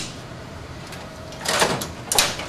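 Fuser unit of a digital laser press sliding along its rails, a short rasp about one and a half seconds in after a quiet stretch.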